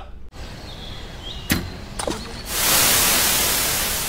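Sound effects of a channel intro: a hiss broken by two sharp cracks, then a loud rushing noise that swells up about two and a half seconds in and slowly fades.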